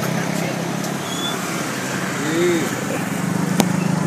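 A steady low motor hum, like an engine running nearby, with faint voices in the background and a single short click near the end.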